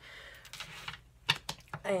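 A few light clicks and taps in quick succession, a little past a second in, from tarot cards being handled on a tabletop.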